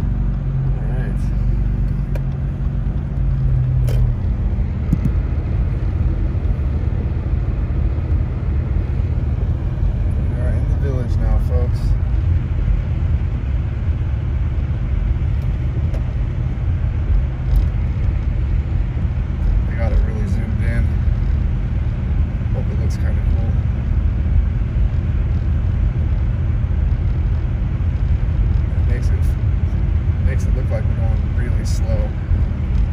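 Car interior road noise while driving on a snow-covered road: engine pull after a stop in the first few seconds, settling into a steady low rumble of engine and tyres.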